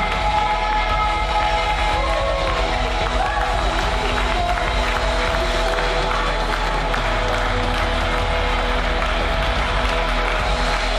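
Worship band's live music holding long sustained chords as a song winds down, with brief sung phrases early on; from about three seconds in, a congregation applauds and cheers over it.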